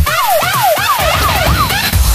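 Dutch house dance track in a breakdown: the kick drum and bass drop out and a police-siren wail sweeps rapidly up and down over the music, about five sweeps. The beat comes back in at the very end.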